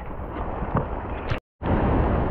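Heavy rain and hail with wind buffeting the microphone: a steady, noisy rush. It is broken by a brief cut to silence about one and a half seconds in, and comes back slightly louder.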